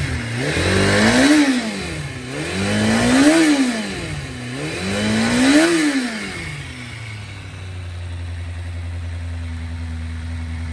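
Kawasaki ZRX400's inline-four engine revved three times, each rev rising and falling over about two seconds, then settling to a steady idle about seven seconds in.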